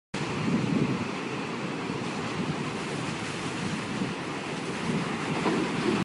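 Sound effect of an animated logo intro: a steady rushing noise with no tune, swelling about half a second in and again near the end, then cutting off abruptly.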